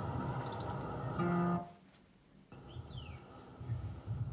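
Audio of a YouTube video playing on an Android car head unit: music with outdoor sounds. It cuts off about one and a half seconds in as the video is switched, and another video's audio starts about a second later.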